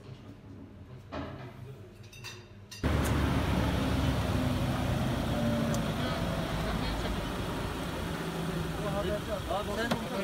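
Faint low noise with quiet voices for the first few seconds. About three seconds in, it gives way suddenly to louder, steady roadside noise of vehicle engines running and traffic, with people talking near the end.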